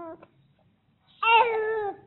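Infant crying: a cry tails off at the start, then after a short pause comes one short, high-pitched wail that falls in pitch at its end.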